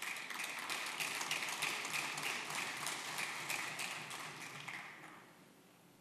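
Applause from members of a legislative chamber: many hands clapping together, dying away about five seconds in.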